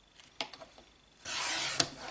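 Small sliding paper trimmer cutting a sheet of silver foil paper: the blade carriage is run along the rail in one short swish about a second in, ending in a sharp click. A light tap comes just before.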